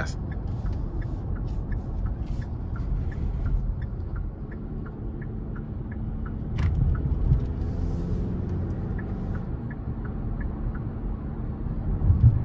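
Cabin sound of a 2023 Hyundai Tucson N Line's 2.5-litre naturally aspirated four-cylinder in sport mode under light throttle: a steady low engine and road rumble, with a run of faint regular ticks, about three a second. A single short knock a little past halfway.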